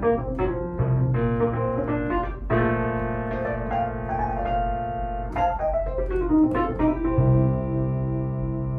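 Pearl River PRK300 digital piano playing its Electric Piano 1 voice: quick runs of notes over a held bass, with sustained chords from about two and a half seconds in and again near the end.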